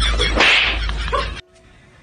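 A sharp swishing crack, like a whip, about half a second in, right after a run of laughter; the audio then cuts off abruptly about a second and a half in.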